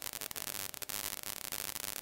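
Faint steady hiss of a lapel microphone's background noise between sentences, with a few faint clicks.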